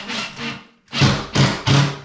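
Cordless impact driver hammering a screw into a wall fixing: one longer run, then three short trigger bursts as the screw is snugged tight.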